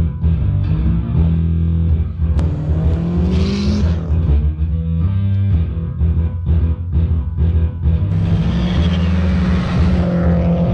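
Five-string electric bass playing a riff of deep sustained notes, mixed with a turbocharged flat-four engine revving, rising in pitch a few seconds in and again near the end.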